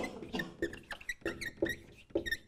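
Dry-wipe marker squeaking on a whiteboard in a run of short, quick strokes as a word is written.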